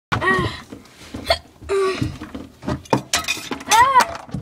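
A person laughing in three short bursts, the loudest near the end, with scattered sharp knocks between them as things are shaken.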